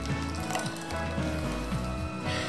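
Thick blended gazpacho pouring from a blender jug into a bowl, a soft steady liquid pour, with background music underneath.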